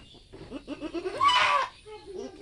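A goat bleats once, loudly, a little over a second in, for about half a second: a doe in labour calling out as a kid is pulled out by hand.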